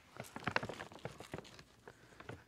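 Fine-grade vermiculite scooped by hand from a plastic bag and sprinkled over soil blocks: a faint, irregular pattering of small ticks and rustles.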